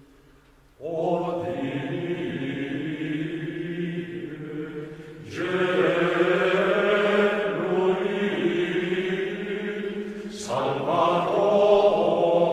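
Male choir of Benedictine monks singing a Latin Gregorian chant responsory in unison. After a brief hush the voices come in about a second in, with short breaths and louder re-entries around five and ten seconds in.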